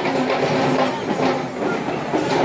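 Procession music from a troupe of Kandyan dancers and players: a fast, rattling rhythm of drums and jingling metal percussion over a held low tone.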